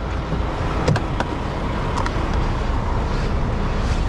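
Semi-truck diesel engine idling steadily, a low rumble, with a few faint clicks about one and two seconds in.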